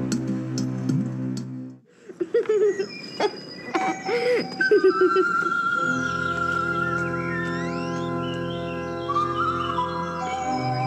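Film score music: sustained chords break off about two seconds in, a few short sliding sounds follow, and from about five seconds a new passage begins, with sustained organ-like chords under a high, held melody line that wavers slightly.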